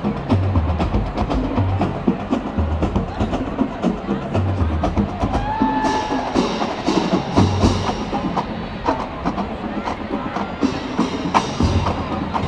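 Stadium drumline playing: bass drum beats in a repeating pattern with many sharp stick and snare clicks, over crowd noise. A short pitched tone, such as a whistle or a voice, sounds about halfway through.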